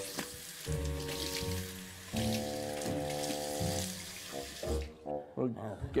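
Water running from a tap into a bathroom sink, a steady splashing that stops about five seconds in, under low sustained background music notes.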